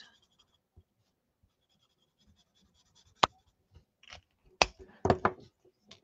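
Faint scratching of an alcohol marker's tip on cardstock, then a sharp click about three seconds in and several more clicks and knocks as plastic markers are capped and set down on the craft mat.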